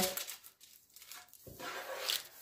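Hands rubbing and pressing damp baking paper flat against a baking tray: a soft rustling, brushing sound that starts about halfway through after a brief near-quiet moment.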